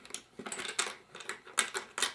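Light, irregular clicks and taps of a metal screw and corner bracket being handled and fitted against a hard plastic light-switch box and cover plate.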